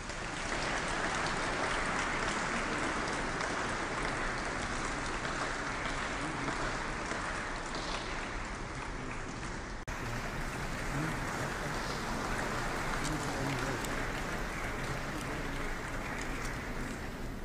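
Audience applauding steadily, with a brief dropout about ten seconds in where the recording is spliced.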